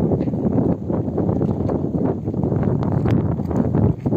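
Strong wind buffeting the microphone: a loud, rough, unsteady rushing noise.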